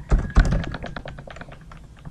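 Typing on a computer keyboard: a quick run of key clicks, with two louder strokes near the start and lighter clicks thinning out towards the end.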